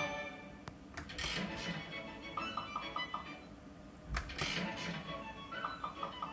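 Wish Upon a Leprechaun slot machine playing its game music and spin jingles: short melodic phrases with runs of quick repeated chime notes, and a few sharp clicks, one under a second in and another about four seconds in.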